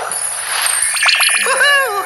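Cartoon magic-transformation sound effect: a whoosh, then a run of twinkling chimes about a second in, then sliding tones near the end.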